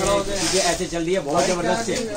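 Several voices talking over one another: customers and shop staff chattering in a crowded clothing shop.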